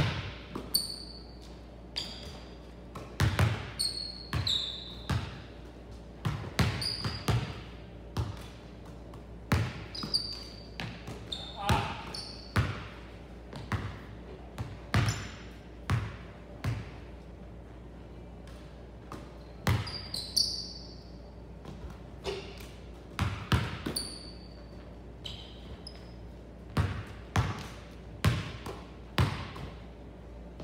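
Basketballs bouncing on a hardwood gym floor in irregular dribbles, shots and catches, the hits echoing in the hall, with short high squeaks from sneakers on the court in between. A quieter gap comes a little past the middle.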